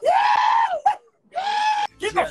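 A person's high-pitched scream, two drawn-out cries: the first arches up and then down in pitch, and after a brief gap the second is held level.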